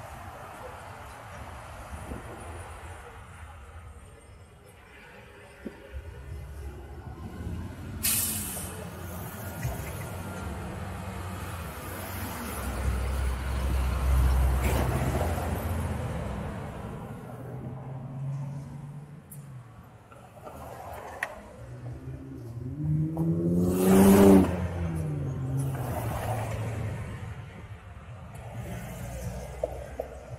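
Road traffic passing through an intersection, heard from a stopped, silent electric motorcycle. A short sharp hiss comes about eight seconds in, and a deep rumble of a heavy vehicle builds around the middle. Near the end an engine passes close, its pitch rising and then dropping, and this is the loudest moment.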